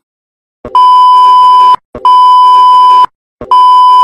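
Three long electronic beeps at one steady pitch, each about a second long with short gaps between, starting after a brief silence: a censor bleep tone.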